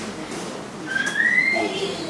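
A short whistle rising in pitch, starting about a second in and lasting under a second, over faint voices in a hall.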